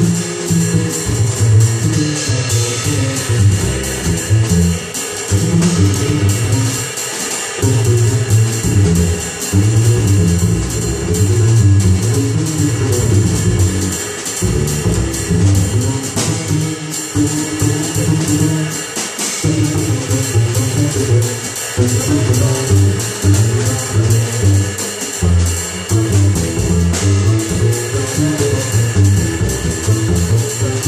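A double bass and drum kit playing jazz with no trumpet: the bass plucks a moving line of low notes while the drums, played with sticks, keep time on the cymbals.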